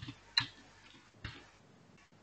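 Three separate sharp clicks from a computer keyboard and mouse, spread over about a second and a half.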